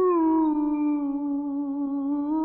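A singer in Persian classical vocal music (avaz) in dastgah Chahargah steps up to a higher note at the start and holds it as one long, steady note.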